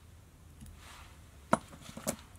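A single sharp snip of small fly-tying scissors cutting the orange tying thread, about one and a half seconds in, followed by a fainter click just after.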